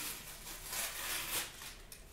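Paper packaging of a new mascara being torn open by hand: a rustling, tearing hiss that swells in the middle, with a few small clicks near the end.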